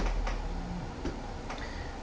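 Quiet room tone with a low hum and a few faint, irregular clicks.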